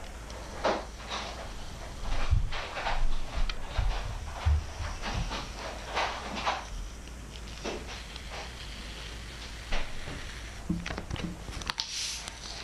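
Masking tape being peeled slowly off a black spray-painted plexiglass sheet: irregular short crackling, rasping strokes as the tape lifts, with a few low bumps from handling the sheet.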